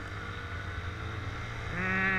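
Motorcycle engine running steadily at low speed, heard from on the bike. Near the end a man's voice begins a long held hesitation sound.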